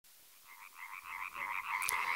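Frog calls: a fast, even train of croaking pulses, about nine a second, fading in from silence about half a second in and growing louder.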